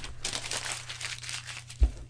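A sheet of notebook paper rustling as it is picked up and handled, followed by a short low thump near the end.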